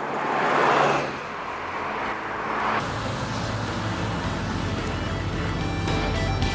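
Road vehicles driving past one after another, each passing noise swelling and fading. Background music comes in about halfway through.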